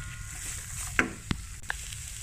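A silicone spatula stirring shredded cabbage in a non-stick frying pan, with a low sizzle and a few short knocks of the spatula against the pan from about a second in.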